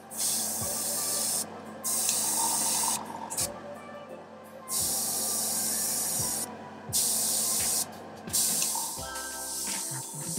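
Airbrush spraying heavily thinned paint in about five separate bursts of hiss, each a second or so long, with short pauses between.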